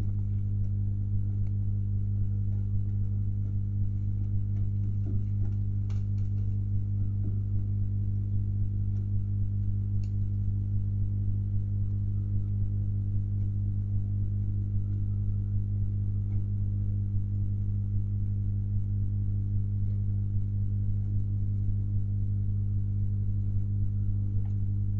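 A steady electrical hum of fixed low tones, unchanging throughout, with a couple of faint clicks about six and ten seconds in.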